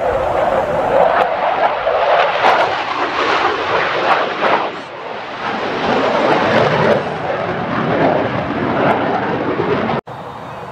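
Loud roar of a Royal Malaysian Air Force F/A-18D Hornet's twin turbofan engines as the jet manoeuvres during a display, with a brief dip in loudness about five seconds in.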